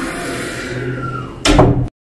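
A door handle being worked and a wooden door opening, with a loud clatter about one and a half seconds in, after which the sound cuts off abruptly.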